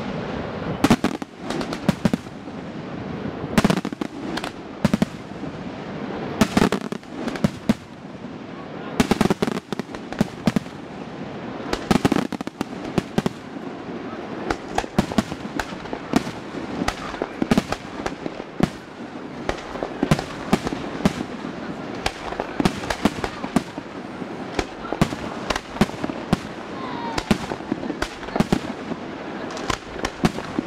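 Aerial fireworks display: a dense, continuous run of shell bursts and crackling reports, several a second, over a constant rumble.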